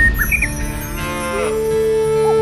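A cow's low moo, falling in pitch as it ends, over the song's background music. A held melodic note comes in near the end.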